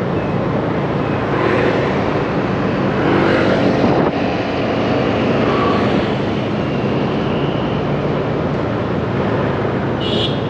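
Steady road noise from riding a motorbike through city traffic: engine drone mixed with the rush of moving air and passing vehicles.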